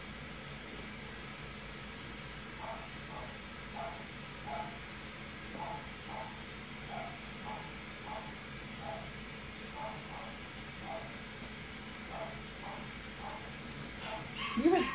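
Grooming shears snipping faintly at a cocker spaniel's leg and foot hair. Over it, the dog makes a string of short, soft sounds, one every half second or so, through most of the stretch.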